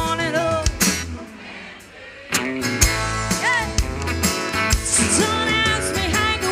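Live country band music with singing. The music drops back and quiets about a second in, then the full band comes back in on a sharp hit just over two seconds in.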